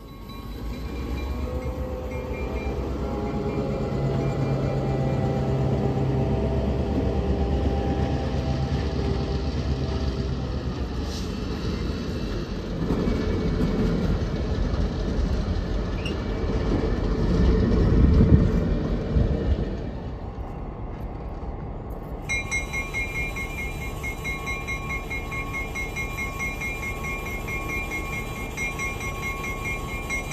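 A diesel locomotive runs slowly past at close range, followed by passenger cars rolling by with a steady rumble of wheels on rail, loudest about 18 seconds in. Later the train is heard running more faintly from a distance.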